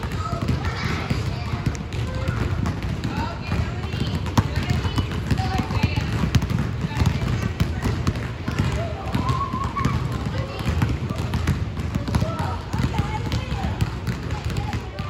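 Several basketballs being dribbled on a hardwood gym floor, with many irregular, overlapping bounces, and children's voices throughout.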